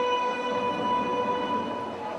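A single held musical note at a steady pitch with strong overtones, sounding like a horn, sustained and fading slightly near the end.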